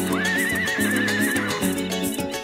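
Background music with a horse whinny laid over it: one quavering high call that rises at the start and holds for about a second.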